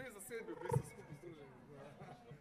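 A man's voice over a microphone making wordless vocal sounds, with a sharp loud burst about three-quarters of a second in. It then trails off quieter.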